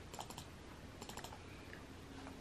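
Faint typing on a computer keyboard: two quick runs of about four keystrokes each, one right at the start and one about a second in.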